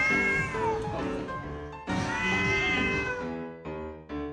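Domestic cats yowling during a cat fight: two drawn-out yowls that rise and fall in pitch, the second starting about two seconds in, over background music.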